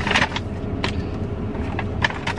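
Rustling and brief clicks of things handled in the lap, loudest right at the start, over a steady low hum inside a car cabin.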